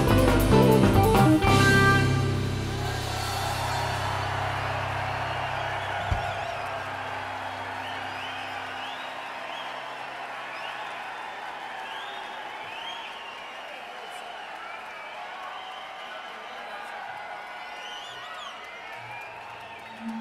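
A live rock band's last chord, on guitars, keyboards and drums, ringing out and dying away in the first couple of seconds, with a low ring lingering a few seconds more. Then an arena crowd cheering, clapping and whistling, slowly fading.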